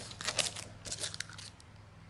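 A few soft clicks and rustles during the first second and a half, then quiet room tone.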